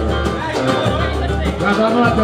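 Live samba music with a man's voice over the band, sung into a microphone.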